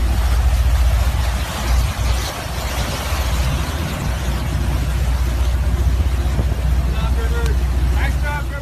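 Water rushing and sloshing through a flooded boat cockpit, with wind on the microphone adding a heavy steady low rumble. A voice calls out near the end.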